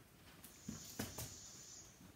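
Quiet room tone with two faint bumps, about two-thirds of a second and one second in.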